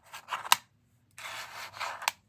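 Small letter tiles clicking against each other, with one sharp click about half a second in. After a brief pause they slide and scrape across the board under the hand for about a second.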